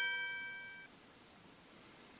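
A single keyboard note, the last of a short intro tune, rings on and fades away within the first second, leaving quiet room tone.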